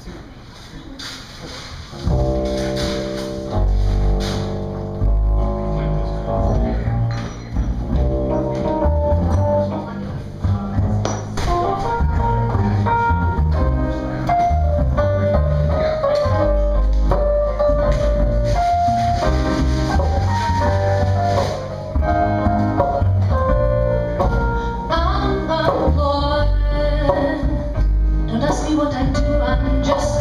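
Live trio of double bass, acoustic guitar and electric keyboard starts playing about two seconds in and carries on steadily, with a strong bass line under keyboard and guitar melody: the opening of a song.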